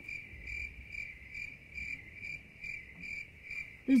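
Cricket chirping: a high, even chirp repeated about two and a half times a second, cutting in suddenly.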